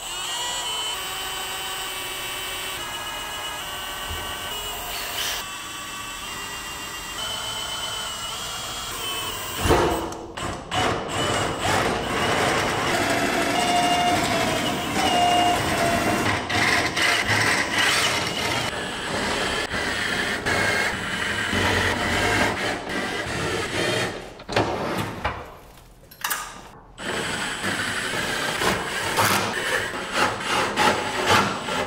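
Background music throughout. From about ten seconds in, a Milwaukee cordless drill bores into aluminium in repeated short runs, with a pause a little before the end.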